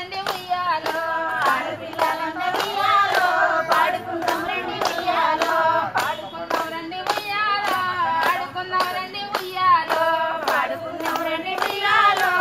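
Women singing a Telugu Bathukamma folk song in a circle, with steady rhythmic hand claps about twice a second keeping the beat.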